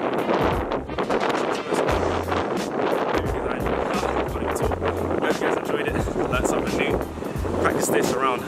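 Wind buffeting the microphone: a dense rushing noise broken by irregular low rumbling gusts, heavy enough to largely bury a man's voice.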